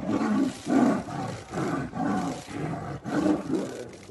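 Tiger roaring: a rapid run of about eight short, loud calls, roughly two a second.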